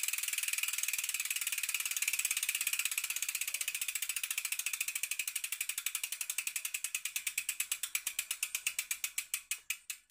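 Bicycle rear hub freewheel ticking as the wheel coasts to a stop: a fast, even buzz of pawl clicks that steadily slows into separate ticks near the end.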